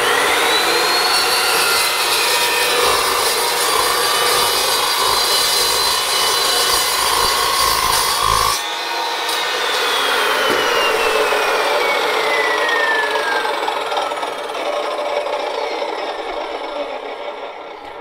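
Evolution S355MCS 14-inch metal-cutting chop saw spinning up with a rising whine, its 66-tooth carbide-tipped blade cutting through quarter-inch-thick three-inch angle iron for about eight and a half seconds. Then the cutting noise stops and the whine falls slowly as the blade coasts down.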